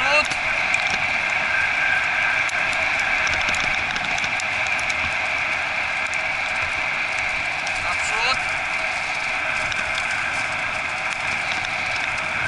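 Steady rolling noise of a dog-training cart's wheels on a dirt forest road as a four-husky team pulls it at speed, with a couple of brief rising squeaks near the start and about eight seconds in.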